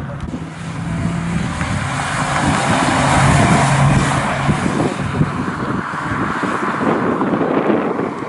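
Regularity-rally car driving past close by: a steady engine note that grows louder to a peak about three to four seconds in as the car passes, then eases off as it drives away down the road.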